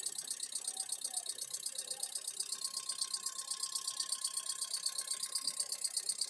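Diesel common-rail injectors from a Hyundai i20 clicking in a rapid, even stream as the repaired engine control unit fires them on a bench tester, the sign that the unit is driving the injectors.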